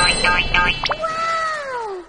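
A rapid pulsing sound, about five beats a second, then about a second in a single long meow that sweeps up sharply and slides slowly down in pitch.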